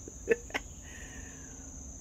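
Steady high-pitched chorus of insects singing in the trees, with two short clicks about a third and half a second in.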